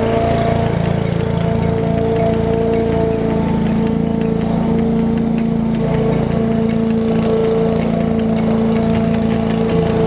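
Honda HRU216M2 walk-behind lawn mower engine running steadily at mowing speed.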